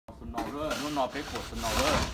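A person talking, over the rasping scrape of a snow shovel blade pushing through snow, loudest near the end.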